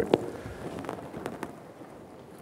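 A few light clicks and taps, the first and sharpest right at the start and three more around the middle, over faint room noise.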